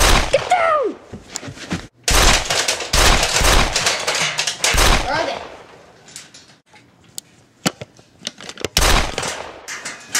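Bursts of rapid gunfire, the heaviest from about two to five seconds in and again briefly just before the end, with a shout at the very start and a few sharp clicks in between.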